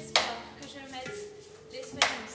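Chakapa, a leaf-bundle rattle, struck in slow single swishes, one just after the start and another at the end, each fading over about half a second, over soft held tones of live mantra music.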